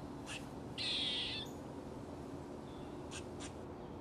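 A single harsh, raspy bird call lasting about half a second, about a second in, with a few faint short ticks before and after it.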